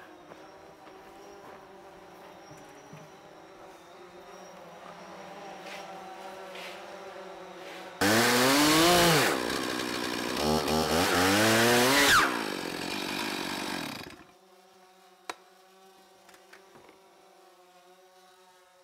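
Stihl 441 two-stroke chainsaw mounted in a portable chainsaw mill, cutting through a beam. It starts suddenly about halfway in, and its pitch rises and falls with the throttle for about six seconds before it cuts off. A faint steady hum comes before it.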